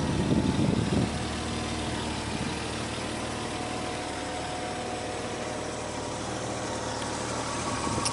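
1992 BMW 325 convertible's straight-six engine idling steadily, with a low rumble over it for about the first second.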